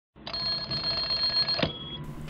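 A bell-like ringing sound with several steady high tones, cutting off sharply about one and a half seconds in, leaving one faint tone hanging.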